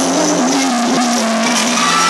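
Live pop ballad through a mall PA: a male singer holds a long, slightly wavering note over the backing track, with the crowd noisy underneath.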